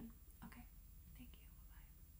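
Near silence: room tone with a low hum and a few faint, short breathy mouth sounds.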